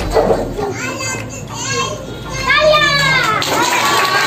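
A crowd of schoolchildren talking and calling out over one another in a classroom, with one loud, high-pitched shout a little past halfway.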